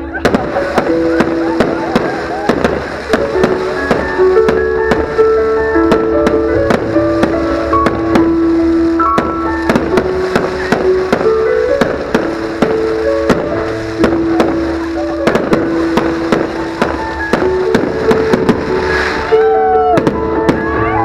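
Fireworks display: a rapid, irregular series of sharp bangs and crackles as shells are launched and burst, with music playing throughout.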